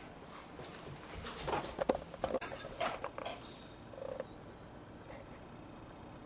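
Children's toys being handled and knocked together on the floor: a scatter of light knocks and clicks with a short rattle over a couple of seconds, then a brief faint tone about four seconds in.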